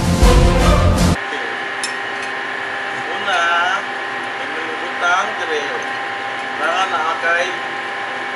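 Theme music that cuts off suddenly about a second in, giving way to a steady hum of shipboard machinery at several pitches, with a few brief snatches of voices over it.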